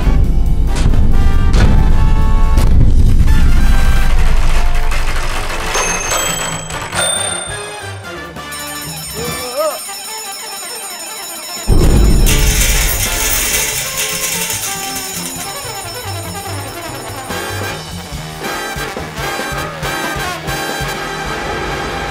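Film soundtrack of score music mixed with sound effects. The mix thins out around ten seconds in, with a wavering rising tone, then comes back with a sudden loud hit just before twelve seconds and fades slowly.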